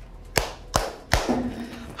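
Three sharp, evenly spaced snaps, a bit under half a second apart.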